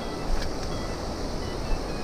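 Steady rush of a shallow river running over stones, with a single light click about a third of a second in.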